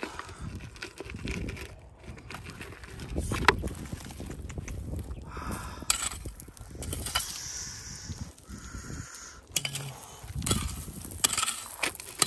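Wind buffeting the microphone, with scattered clicks and rattles of small stones and gravel being handled.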